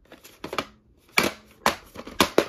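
A VHS tape in its sleeve being handled and turned over in the hand: a few sharp clicks and rustles of the case.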